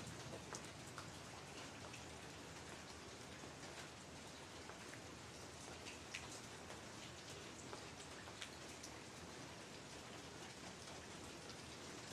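Faint steady rain, with scattered ticks of individual drops hitting surfaces.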